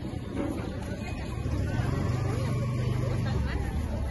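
A motor vehicle's engine running close by, its low hum louder from about a second and a half in until shortly before the end, over background voices.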